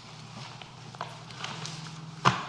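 Quiet room tone through the meeting microphones: a steady low hum with a few faint clicks and knocks, the clearest about a second in.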